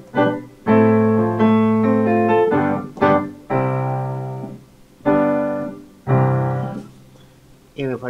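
Nord Piano 3 stage piano playing its Italian Grand sample, a sampled Fazioli grand, with reverb: several struck chords in turn, each ringing and fading, the last dying away near the end.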